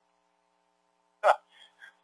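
A short pause with a faint steady hum, then about a second in a single short vocal sound from a person, a clipped syllable or catch of the voice, followed by two faint murmurs.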